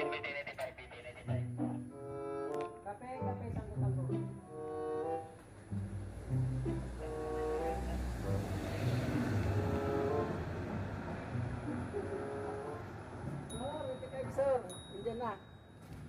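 Background music of bowed strings playing held, stepwise notes. A rumbling whoosh swells and fades in the middle.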